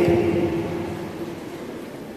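A man's voice through a PA system ends on a held syllable that echoes in a large hall, then fades into low, steady room noise.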